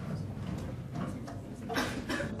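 Hall ambience while performers get settled: a steady low hum with faint scattered shuffles and clicks, and a short rustling noise near the end.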